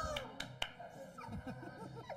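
A small group of spectators reacting to a card-trick reveal, with scattered exclamations and a few sharp claps in the first half-second.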